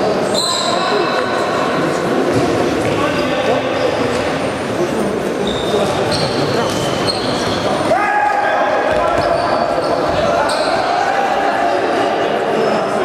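Futsal play on an indoor sports-hall court: trainers squeaking on the floor, the ball being kicked and bouncing, and players calling out, all echoing in the large hall.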